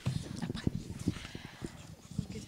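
A run of soft, irregular knocks and rustles, like handling noise on a microphone or people shifting in a room, with no clear pattern.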